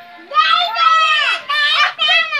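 Children's voices, loud and high-pitched, calling out and chattering while they play, starting about half a second in.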